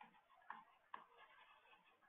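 Two faint ticks of a stylus tapping on a pen tablet while handwriting, about half a second apart, over near silence.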